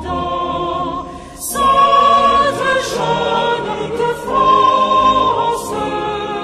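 Choir singing a slow French hymn, each note held for about a second or longer.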